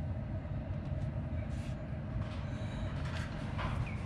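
Roller garage door running on its GDO-9V2 Gen 2 opener motor, a steady rumble with a faint steady hum, heard from inside the car. The door is moving in response to the HomeLink test signal through the newly fitted universal receiver.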